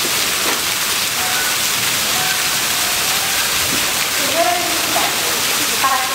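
Steady rushing water, an even hiss with no single splashes standing out. Faint voices join in from about four seconds in.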